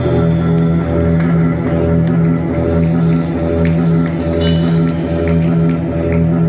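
Live band playing an instrumental groove on electric guitar, drum kit and congas, over a steady low bass line. Short regular ticks from the drums come in about two seconds in.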